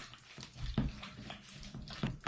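A spoon stirring a thick, wet mixture of shredded meat, condensed cream soup and sour cream in a stainless steel bowl: soft squelches with a few light clicks of the spoon against the bowl.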